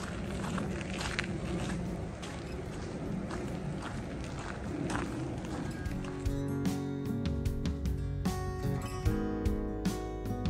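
Footsteps on a dirt trail over outdoor background noise, then background music with a steady beat comes in about six seconds in and carries on to the end.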